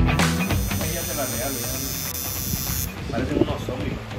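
Electric tattoo machine buzzing with a steady hum as it works on skin; a high whine over the hum stops about three seconds in.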